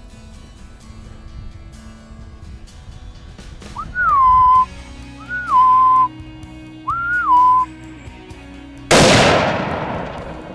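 Three short, loud whistles about a second and a half apart, each rising briefly then levelling off and holding a steady note, followed about a second later by a single rifle shot whose report dies away over about a second.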